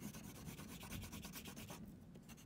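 Oil pastel scribbled hard back and forth on paper, a quiet rubbing that dies away near the end.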